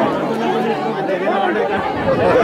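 Several people talking at once in a small crowd: overlapping, indistinct chatter with no single clear voice.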